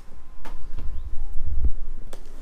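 Handling noise as a cardboard box is worked open by hand: a deep, uneven rumble of low thumps that gets stronger in the second half, with a couple of sharp clicks.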